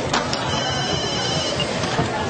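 Mobile phone ringing: a high electronic ringtone sounds for about a second, after a couple of short clicks as the handset is picked up, over a murmur of background chatter.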